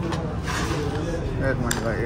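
Talking, with a metal spoon clinking once against a ceramic bowl near the end.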